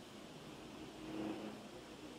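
Quiet room tone with a faint vehicle passing at a distance, swelling briefly about a second in.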